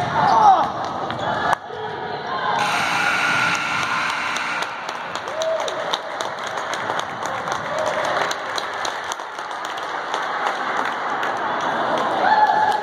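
Basketball bouncing on a hardwood gym floor, a string of short sharp bounces, over spectators' voices and a shout about half a second in, echoing in a large gym.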